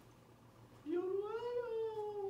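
A long, drawn-out vocal note starts a little under a second in, sliding up in pitch and then slowly falling.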